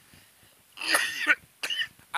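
A person coughing: a loud cough about a second in, followed by a shorter one.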